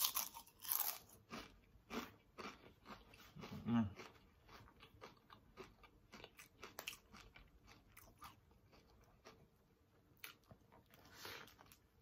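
Close-up crunching and chewing of crisp homemade Cajun chips, the crackling thick for the first several seconds and then thinning out, with a short closed-mouth "mm" hum about four seconds in.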